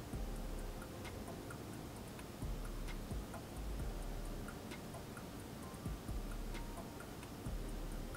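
Faint soft background music with a quick, even ticking beat and faint held tones underneath.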